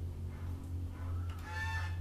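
A steady low hum in the recording, with a brief faint high-pitched call about one and a half seconds in.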